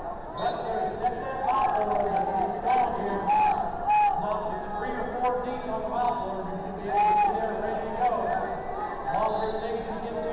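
Chatter and calls from many voices of spectators and wrestlers in a large sports hall, with a few sharp knocks among them.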